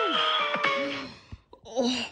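Cartoon soundtrack: held musical notes with short falling pitched sounds over them, fading out about a second in, then a brief breathy sound near the end.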